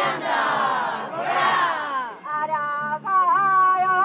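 Kiyari work song in call and response: the mikoshi bearers answer twice with a loud group shout that slides down in pitch, then a lead singer through a megaphone sings long held notes.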